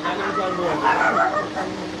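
A dog barking, with people talking in the background.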